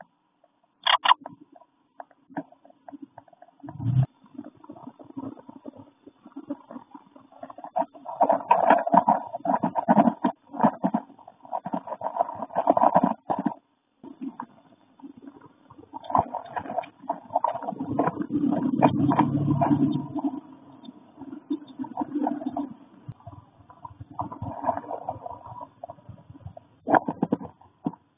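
Wrens shifting about on a twig nest inside a wooden birdhouse, picked up by the nest-camera microphone: irregular rustling, scratching and knocks, muffled and boomy in the small box, louder in long stretches in the middle.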